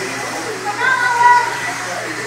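Electric 2WD modified RC buggies running on an indoor dirt track, with a steady high motor whine about halfway through over the hall's noise and background voices.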